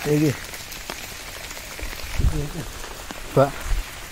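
Steady rain falling on foliage and wet ground, with scattered light ticks of drops.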